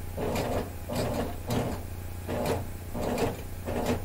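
Babylock serger set for a coverhem stitch, sewing slowly in short spurts, about six in the few seconds, as the hem is stitched along the marked line.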